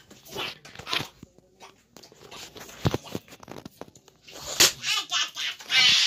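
Knocks and rubbing of a handheld phone being swung about, with one heavier thud about three seconds in and a child's breathy vocal sounds near the end.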